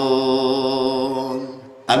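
A man singing a Bengali Islamic song (gojol) unaccompanied into a microphone, holding one long steady note that fades out about a second and a half in. The next sung line begins just before the end.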